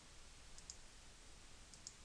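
Near silence: room tone, with two faint computer-mouse button clicks in quick succession near the end.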